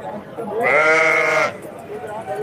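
A sheep bleats once: a single call of about a second, loud and steady, that starts about half a second in, heard over low background voices.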